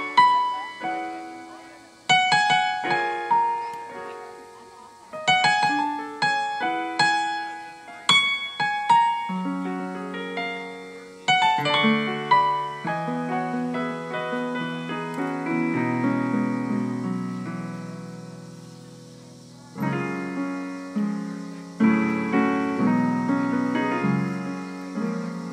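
Solo piano-voiced playing on a digital keyboard: chords struck and left to ring out, then a stretch of held low chords through the middle that slowly fades before new chords come in about four seconds before the end.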